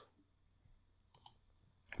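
Near silence broken by two quick computer mouse clicks in close succession, a little over a second in.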